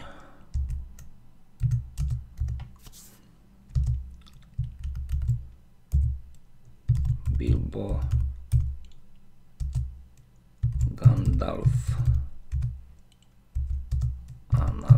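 Typing on a computer keyboard: quick runs of keystrokes with short pauses between them, each key a dull knock with a light click.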